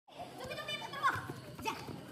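Voices calling and shouting during a five-a-side football game, with one louder high-pitched cry about a second in.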